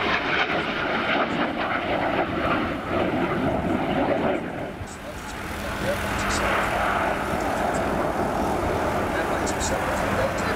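Jet noise from a MiG-29 fighter's twin engines during a flying display: a steady broad roar that dips for a moment about halfway through, then builds again.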